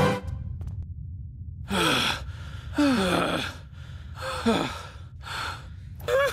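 Cartoon characters' shaky gasps and sighs, four breaths each falling in pitch, over a low steady hum, the sound of being badly shaken.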